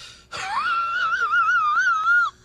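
A dog howling: one long, high, wavering howl that starts about a third of a second in with an upward glide.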